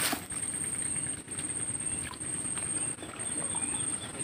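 Outdoor riverside ambience: a steady hiss with a thin, steady high-pitched whine, a few faint chirps, and a short click right at the start.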